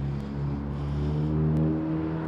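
A motor vehicle engine running steadily nearby, its low hum swelling a little past the middle, with wind rushing over the microphone.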